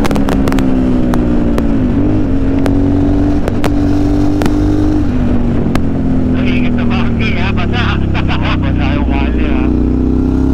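Aprilia Shiver's V-twin engine running steadily at road speed, heard from on the bike with wind on the microphone. The engine note eases slightly lower in the second half and picks up again near the end.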